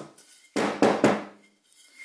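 Metal locking face clamp and a wooden 2x4 being handled on a workbench: a short burst of metallic clatter and knocking about half a second in, then a faint ring.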